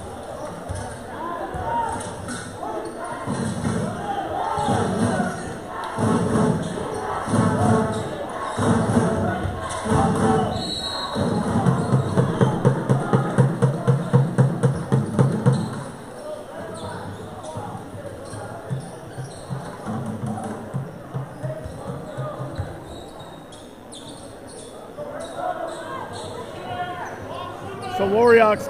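A basketball being dribbled on a hardwood gym floor: spaced bounces, then a fast run of bounces about halfway through, over crowd chatter.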